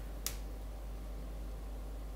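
A single light, sharp click as a silicone spatula touches the rim of a ceramic mug of water on its way in to stir it, over a faint steady low room hum.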